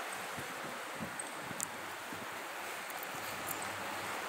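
Steady outdoor background hiss, wind-like, with a faint click about a second and a half in.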